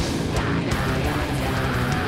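A metalcore band playing live: heavy electric guitars and pounding drums, loud and unbroken.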